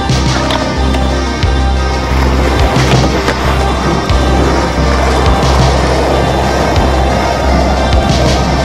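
Skateboard wheels rolling and the board clacking on concrete, with a few sharp impacts, under a synth music track with a steady bass line.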